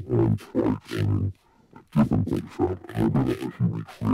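Dialogue turned into a neurofunk bass by pitch-shifting, modulated filtering and EQ, and saturator distortion, playing back as a growling, choppy sound that keeps the rhythm of speech, with a short break about a second and a half in. The distortion is clipping a little.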